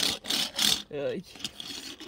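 Small plastic toy car pushed and rolling across a hardwood floor, its wheels giving a rough rasp in two stretches.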